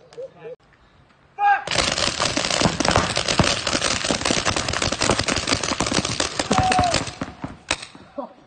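Many paintball markers firing rapidly at once in one continuous volley of pops. It starts suddenly about one and a half seconds in and tails off at about seven seconds.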